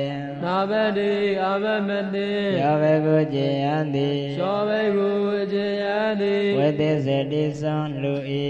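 A man chanting Pali verses in a slow, melodic recitation, holding long notes that step up and down in pitch.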